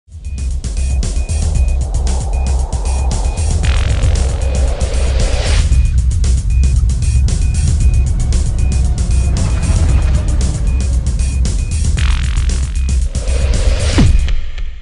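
Electronic intro music with a heavy, steady bass and a fast ticking hi-hat beat. Two rising whoosh swells build through it, one about four seconds in and one near the end.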